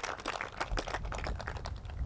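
Small crowd applauding, a patter of scattered hand claps that thins out near the end.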